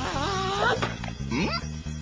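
Background music with a high, wavering whimper-like cry over it in the first second, and a short cry rising in pitch a little after halfway.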